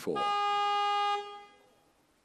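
An electronic buzzer sounds one steady, horn-like beep. It holds for about a second and then fades away.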